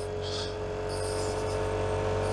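Vespa GTS scooter's single-cylinder engine running steadily under way, a constant hum over road and wind noise.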